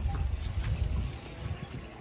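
A clear plastic gift bag rustling faintly as it is handled and pulled open, over a low rumble.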